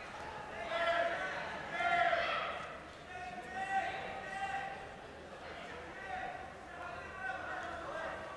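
Voices speaking or calling out in short phrases in a large hall, loudest about one and two seconds in.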